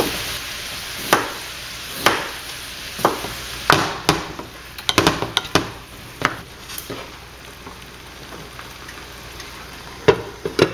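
Ground beef sizzling in a skillet while a wooden spoon knocks and scrapes against the pan, breaking up and stirring the meat, about a dozen knocks. The sizzle is loudest at first and dies down over the second half.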